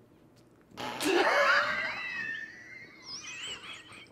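A person's high-pitched, wavering vocal squeal, starting about a second in and sliding up and down in pitch as it fades over a couple of seconds.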